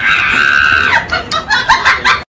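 A chicken clucking: one drawn-out call for about the first second, then a run of short, quick clucks.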